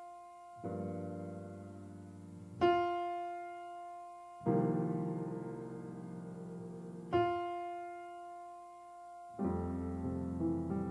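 Grand piano played solo in a slow, spacious passage. A single high note alternates with a fuller low chord, each struck about every two seconds and left to ring and fade.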